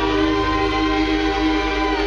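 Live soul music: the band and vocal group hold one long sustained chord, which breaks off near the end.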